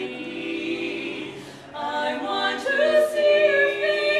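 Women's barbershop quartet singing a cappella in four-part close harmony. The voices hold a chord, fall away briefly about a second and a half in, then come back in louder on a new phrase.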